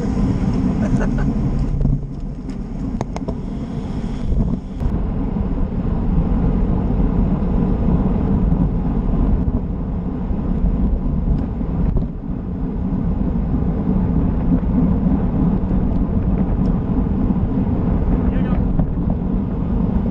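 Wind buffeting the microphone of a bike-mounted action camera as a road cyclist rides fast in a bunch: a steady low rush, with a few brief voices in the first second or two.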